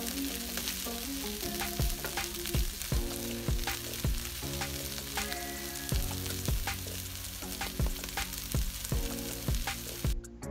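Chickpeas, onion and red bell pepper sizzling in olive oil in a nonstick frying pan while a wooden spoon stirs them. The spoon scrapes and knocks against the pan about twice a second.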